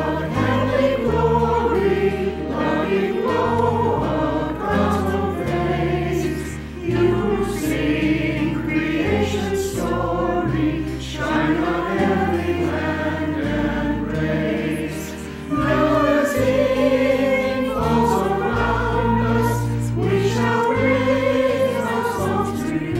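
Mixed choir singing a hymn, accompanied by acoustic guitar and a bass guitar whose low notes change about every second.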